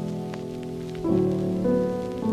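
Background piano music: held chords, with a new chord struck about a second in and another near the end. Faint scattered ticks sit under the music.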